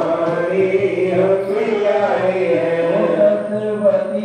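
Devotional chanting set to music: a voice holds long notes and glides between pitches over a steady low drone.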